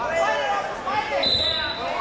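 Several spectators' voices shouting and calling over one another in a large echoing gym during a wrestling bout, with a brief high steady tone a little past the middle.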